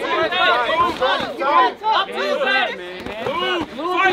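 A crowd of spectators shouting and yelling over one another, several voices at once.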